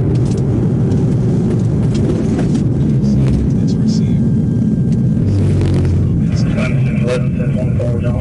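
Police patrol car cabin noise: a steady low road and engine rumble as the car slows from highway speed to a crawl while pulling over behind a stopped vehicle.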